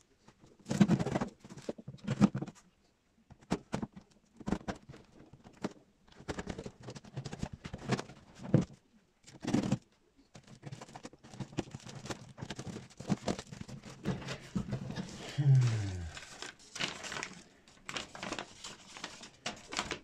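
Packing tape and a cardboard box being torn open by hand: a string of short rips, crackles and rustles, with paper rustling near the end.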